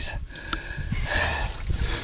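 Water splashing in an ice-fishing hole as a released northern pike thrashes and kicks away, the splashing strongest in the second half.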